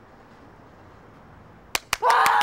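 Faint steady background hiss, then two sharp clicks about a fifth of a second apart near the end, as a small handheld object is worked.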